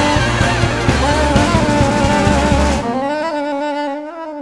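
Jazz big band playing full with drums and bass until nearly three seconds in, when the band drops out and a lone wind-instrument soloist carries on by himself with a single melodic line.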